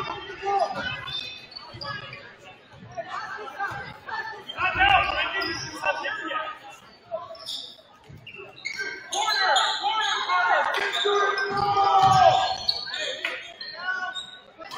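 A basketball dribbled on a hardwood gym floor during live play, with shouted voices from players, coaches and spectators.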